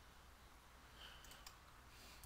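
Near silence: faint room tone with a few faint computer mouse clicks in the second half.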